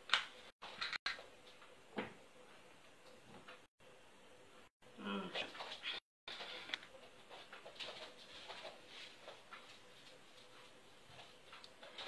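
A few faint clicks and knocks of a gas hob burner being lit under a pot, over a faint steady background, with a short faint voice sound about five seconds in. The audio cuts out completely for an instant several times.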